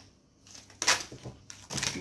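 A deck of tarot cards being shuffled and fanned out by hand: two short papery riffling bursts, about a second in and near the end.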